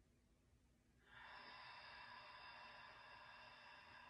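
A person's long, faint exhale through the mouth, a sigh-like breath out that starts about a second in and lasts some three and a half seconds, one of the deep breaths of a guided breathing exercise.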